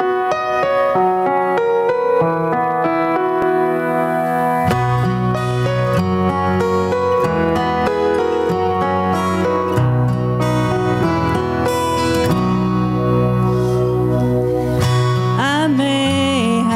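Instrumental intro of a slow gospel song on acoustic guitar with keyboard accompaniment; low bass notes join about five seconds in. A woman's singing voice enters right at the end.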